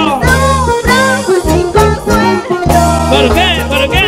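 Live band music in an instrumental passage: an electric bass guitar holds long low notes under a wavering lead melody.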